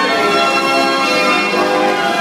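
A 65-key Bruder Elite Apollo carousel band organ playing a tune, with many sustained notes and bell-like tones at a steady, loud level.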